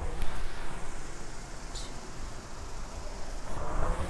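Concept2 indoor rower's air-resistance flywheel whirring as it spins through a slow stroke, at about 14 strokes a minute. The whoosh swells again near the end with the next pull.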